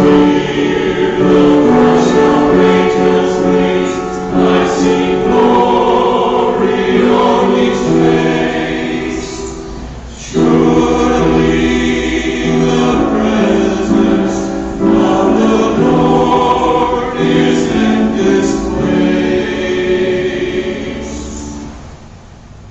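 Church choir singing together in two long phrases, with a short break about ten seconds in; the last note fades out near the end.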